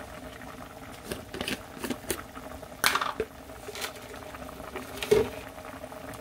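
Squid and its own juices simmering in a pan, a steady bubbling with scattered sharp pops and clicks; the loudest come about three seconds in and just after five seconds.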